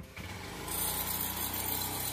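An engine running steadily, with a hiss joining in about a third of the way through.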